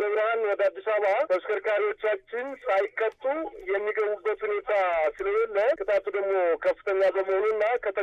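Speech only: one voice talking steadily, with only brief pauses.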